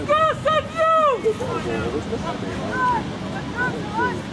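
A loud, high-pitched shout of three drawn-out syllables in the first second, then fainter calls from other voices, with wind rumbling on the microphone.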